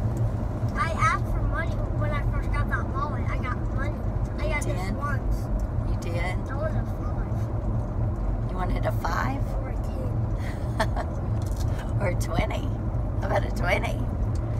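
Steady low rumble of road and engine noise inside a moving vehicle's cabin, with short bits of talk over it.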